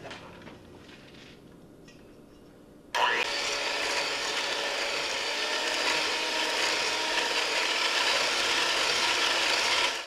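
Electric hand mixer switching on about three seconds in and running steadily, its wire beaters whipping cold heavy cream in a stainless steel bowl toward soft peaks.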